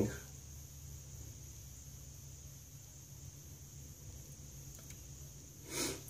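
Quiet room tone: a steady low hum with a faint high hiss. A short rush of noise, like a breath, comes near the end.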